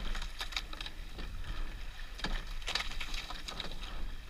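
Sweep-oared rowing shell under way: oars knocking in their oarlocks and blades entering and leaving the water in two clusters of clunks and splashes about two seconds apart, one per stroke, over wind rumbling on the microphone.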